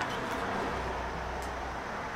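Low, steady background rumble, a little stronger in the middle, with no distinct sound events apart from one faint tick.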